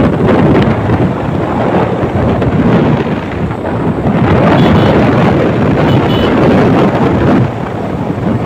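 Wind buffeting the microphone of a moving motorcycle, a loud, rough rumble with the bike's road and engine noise underneath; it eases briefly near the end.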